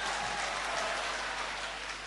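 A large audience applauding, the clapping easing off slowly.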